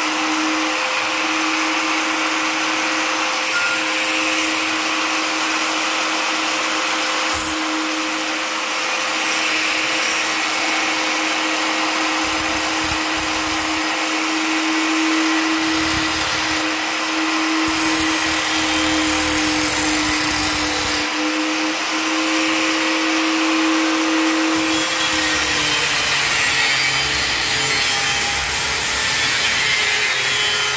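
Angle grinder with a cut-off disc running steadily while cutting through a stainless steel trowel blade, a steady motor whine over the grinding noise. The whine drops slightly in pitch about 25 seconds in as the motor comes under heavier load.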